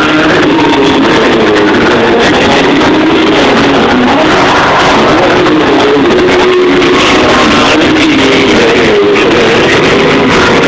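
Live concert music from a stage PA, with a melody line of held notes over a dense accompaniment, recorded from the audience very loud, close to full scale.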